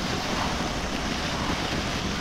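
Steady wind rush over the microphone of a camera mounted on a motorcycle riding at road speed, over the low, even noise of the bike and the road.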